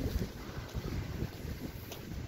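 Wind buffeting a phone's microphone: an irregular low rumble of noise, with no distinct events.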